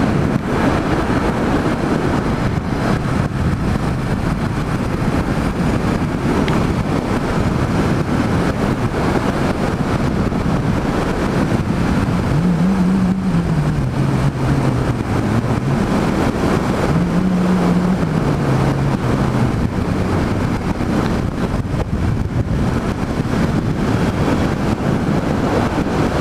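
Yamaha MT-07's parallel-twin engine running on the move, under the rush of wind on the microphone. Twice, around the middle, the engine note rises and then falls away in steps.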